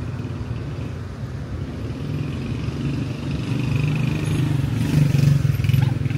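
Street traffic: a car engine growing louder as it approaches and passes close by, loudest about five seconds in.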